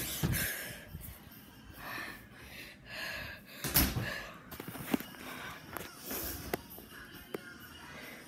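A person breathing hard with gasps, out of breath from the near escape. Several sharp clicks and bumps of the phone being handled are heard about halfway through and near the end.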